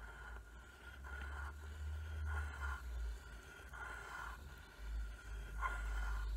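Coloured pencil scratching on paper as it traces a spiral, in soft repeated strokes about once a second, over a low rumble.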